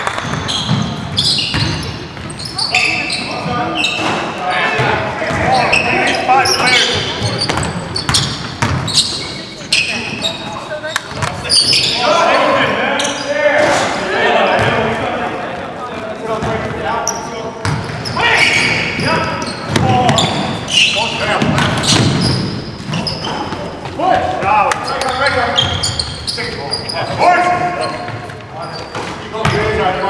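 Basketball game sounds in a large gym: a ball bouncing on the hardwood floor with players' voices and shouts carrying around the hall throughout.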